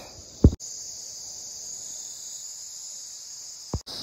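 Steady high-pitched chirring of an insect chorus. A short sharp thump comes about half a second in, and a brief click comes near the end.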